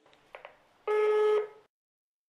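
Answering machine beep: one steady electronic tone about half a second long, marking the end of a recorded message, preceded by two faint clicks.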